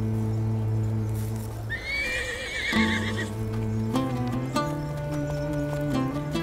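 A horse whinnies once, a quavering call of about a second and a half, about two seconds in. It sounds over a sustained orchestral score whose held chords shift a few times.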